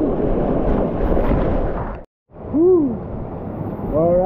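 Rushing whitewater close to the microphone, which cuts off abruptly about two seconds in. Then a man gives one short whoop, its pitch rising and falling.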